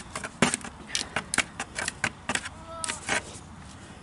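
Shovel scooping composted soil into a plastic bucket: a dozen or so short, irregular scrapes and knocks.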